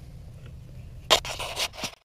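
A brief scratchy, rustling scrape starting about a second in and lasting under a second, over a low steady hum. The sound then cuts off suddenly.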